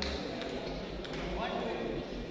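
Table tennis rally: the ball clicking off the paddles and the table, a sharp click roughly every half second, over a background of spectators' chatter.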